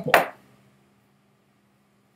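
The tail of a spoken word, then near silence: quiet room tone with a faint steady hum.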